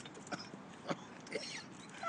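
A dog making a few faint, short noises about half a second apart.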